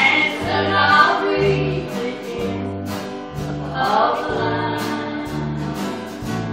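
A gospel song sung with instrumental accompaniment. The singing rises over a bass line that steps between notes on a steady beat.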